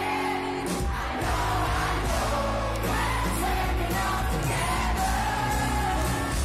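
Rock band playing live, heard from within the crowd: a sung line over held chords, then drums and bass come in heavily under a second in and the full band plays on with the vocal.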